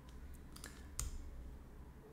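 A few faint clicks from working a computer's mouse and keyboard, the sharpest about a second in, over a low steady hum.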